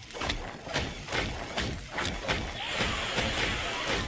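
Sound effects from a 3D animated robot action short: a run of irregular sharp hits and knocks over a low rumble, with a steady hiss coming in about two-thirds of the way through.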